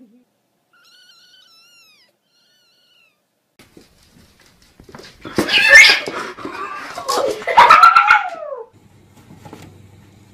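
A kitten mewing faintly a few times about a second in. A few seconds later, cats fighting: about three seconds of loud screeching and yowling, ending in one long yowl that falls in pitch.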